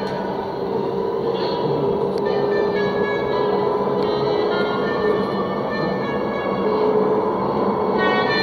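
Steady rushing ride noise inside an electric interurban passenger train running at speed, with a few faint clicks. Instrumental background music plays underneath.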